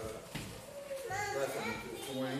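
Indistinct talking. A high-pitched voice, like a child's, comes in about a second in.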